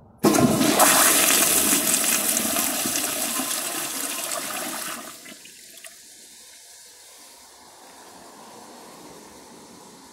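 A 2007 Crane Economiser toilet flushing: a sudden loud rush of water that lasts about five seconds, then drops away sharply to the quieter hiss of the refill.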